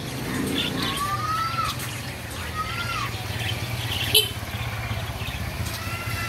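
Caged budgerigars (parakeets) chirping, with two drawn-out gliding whistles in the first half. A sharp click about four seconds in, and a steady low hum underneath.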